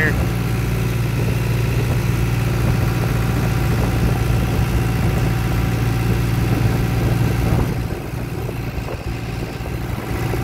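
Farm tractor engine running steadily as the tractor drives along a road, with a constant low drone. It gets a little quieter near the end.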